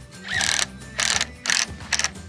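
HiKOKI cordless driver driving a screw into a wooden board in four short bursts of the motor.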